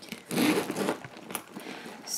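Handbag's top zipper being pulled open, a rasping run of about half a second that starts a little way in, with some rustle of the bag being handled.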